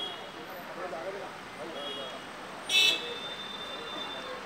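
Street sound with faint voices in the background as an SUV pulls up; near the end a single loud, short, high-pitched toot that trails off into a thin steady tone.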